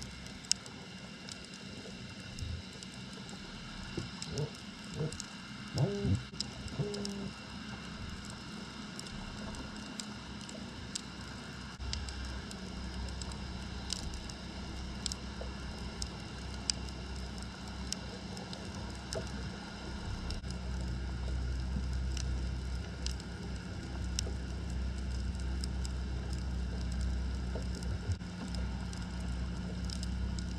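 Underwater sound picked up by an action camera in its waterproof housing on the seabed: a steady low rumble that grows louder about twelve seconds in, with scattered sharp clicks throughout and a few short pitched sounds about four to seven seconds in.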